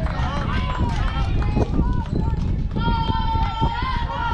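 Overlapping shouts and calls from youth baseball players and spectators around the field, with one long held call starting a little under three seconds in.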